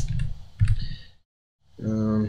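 Typing on a computer keyboard: a few key clicks in the first second. The sound then cuts off to dead silence, and near the end comes a short voiced hum or 'uh'.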